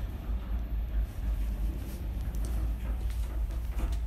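Steady low rumble of a motorised car turntable rotating a car, with a few faint knocks from the handheld camera.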